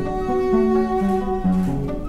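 Viola and classical guitar duo playing: the bowed viola holds one long note while lower notes change beneath it about every half second.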